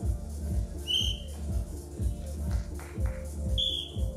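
Two short, high blasts of a referee's whistle, about a second in and near the end, as the bout restarts. Electronic dance music with a steady beat plays throughout.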